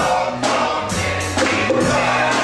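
Live gospel praise music: voices singing together over a steady bass line, with sharp drum hits.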